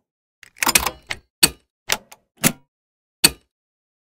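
A heavy knock with a brief rattle about half a second in, followed by five short sharp clicks spread unevenly over the next two and a half seconds.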